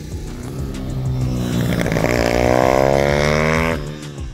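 A small racing motorcycle's engine accelerating hard, its pitch rising for about two and a half seconds and cutting off just before the end, over background music.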